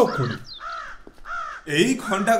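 A crow cawing several times in a row, each caw a short rise-and-fall call about half a second apart, set between spoken lines of dialogue.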